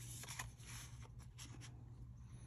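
Faint rubbing and light ticks of thick cardboard trading cards being slid and shuffled between the fingers, over a low steady hum.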